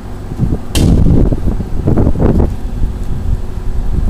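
Wind buffeting the microphone as a loud, uneven low rumble, with one short sharp click or scrape about three-quarters of a second in.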